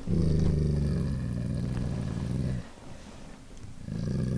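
A dog growling low and steadily. The growl breaks off about two and a half seconds in and starts again near the end. It is the dog's reaction to people outside.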